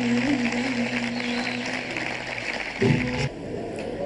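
A female singer holds the long final note of an Arabic song over orchestral accompaniment, and the note ends about two seconds in. A short, loud closing chord from the band follows about three seconds in.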